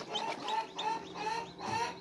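Newly hatched chicken chicks peeping: a quick series of short, high peeps, several a second.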